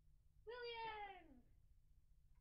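A person's high-pitched voice gives one drawn-out cry that slides down in pitch, starting about half a second in and lasting close to a second.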